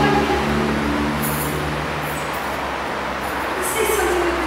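Steady background noise with a constant low hum, with faint voices in the first second.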